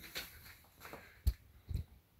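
Quiet room sound with one sharp click a little over halfway through and a softer knock near the end.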